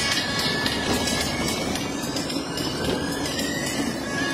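Steady road and engine noise inside the cabin of a moving vehicle, with music playing over it.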